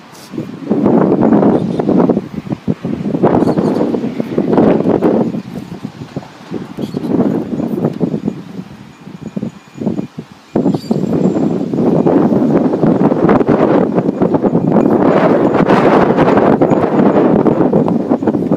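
Wind buffeting the camera's microphone in rough gusts, then blowing almost steadily through the second half.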